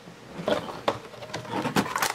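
Hands opening a cardboard trading-card hobby box and handling the pack inside: rustling with a quick run of sharp clicks and snaps starting about half a second in.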